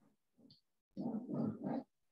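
Indistinct voice sounds: a few faint muttered syllables, then a louder run of about three quick syllables around the middle.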